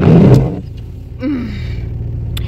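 A car engine idles steadily while the windshield wipers sweep over dry, dirty glass, with a loud swish in the first half second. The washer fluid is not spraying, so the wipers run dry.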